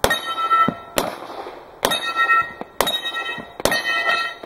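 Handgun shots, five of them about a second apart, each followed by the ringing clang of a steel plate being hit on a Texas star target.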